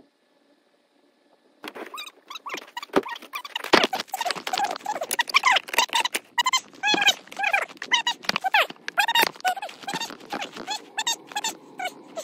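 Fast-forwarded audio at five times speed: a man's voice sped up into high, squeaky chatter, mixed with quick clicks and scrapes from shoveling snow. Almost silent for the first second and a half.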